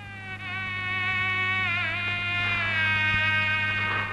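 Film background music: a single high held melody note that wavers briefly near the middle, then slides down to a lower note and holds. A steady low hum runs underneath.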